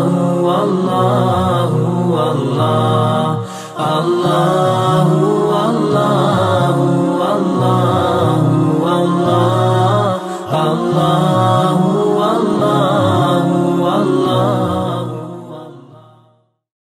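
Chanted vocal music with several layered voices over a steady low drone, briefly dipping twice and fading out near the end.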